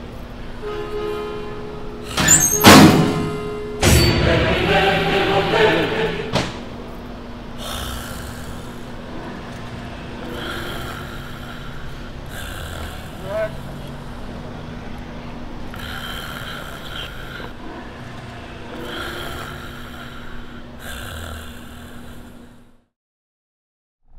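A motor vehicle on the road: loud, irregular bursts in the first six seconds or so, then a steady hum with swells every couple of seconds.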